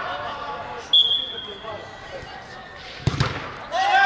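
A referee's whistle gives one short, steady blast about a second in. About two seconds later a football is struck with a sharp thud, and players shout.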